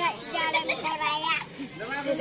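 A young child's voice talking in short phrases.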